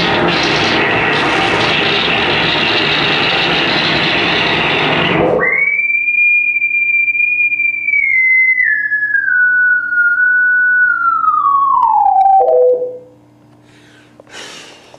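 Frequency-modulation synthesis from a SuperCollider patch played through a television's speaker: a dense, noisy electronic texture for about five seconds, then abruptly a single whistle-like tone that slides downward in steps and cuts off near the end, over a faint low hum.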